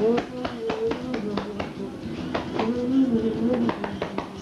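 Hands patting and slapping a man's back during a hug, a quick irregular series of sharp taps, over a man's drawn-out vocal sounds.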